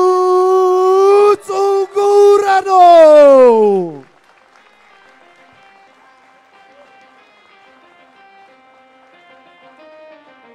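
Ring announcer's long, drawn-out call of a fighter's name through the PA microphone, held on one high pitch with two short breaks, then sliding down in pitch and ending about four seconds in. Faint walkout music follows.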